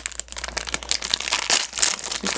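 Foil blind-bag wrapper crinkling irregularly as it is grabbed, handled and pulled open.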